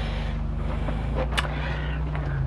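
A steady low mechanical hum, with one light click about one and a half seconds in.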